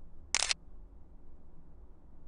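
Smartphone camera shutter sound: one short click about a third of a second in as a photo is taken.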